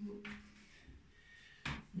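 A quiet room between remarks: the faint tail of a voice dies away at the start, and a short burst of noise comes near the end.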